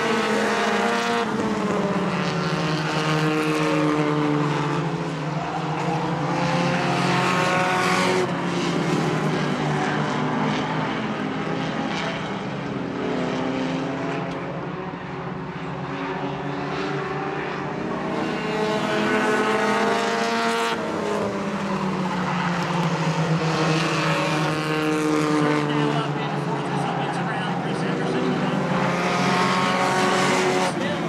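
Several race cars' engines running laps on a short paved oval. The engine pitch rises and falls again and again as the cars accelerate, lift and pass, swelling and easing in waves, a little softer around the middle.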